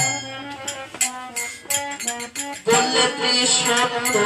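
Matua namkirtan devotional music: a harmonium holding notes over repeated percussion strikes, growing louder and fuller about two-thirds of the way through.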